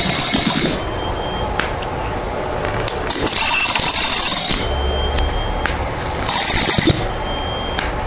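High-voltage arc from a flyback transformer driven by a ZVS driver, sizzling loudly in bursts: at the start, again from about three to nearly five seconds in, and briefly after six seconds. In between it is quieter, with a few sharp snaps. Drawing the arc out raises the driver's supply current to about 13 A; the builder estimates the output at about 20 kV.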